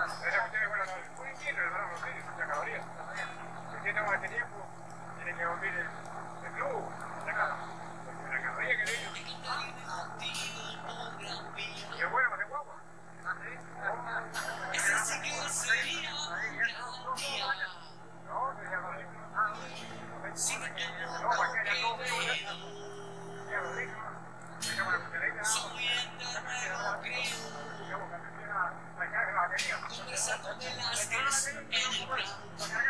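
Indistinct voices talking throughout, over a steady low drone.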